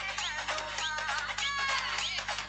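Electronic music with a steady beat and sliding, synthesized melody lines.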